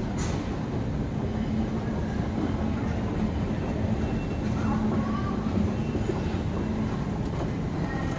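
Steady low rumble and hum of a moving London Underground escalator, with the deep station's mechanical noise around it.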